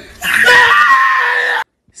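A long, high scream held on one pitch, cut off suddenly about a second and a half in.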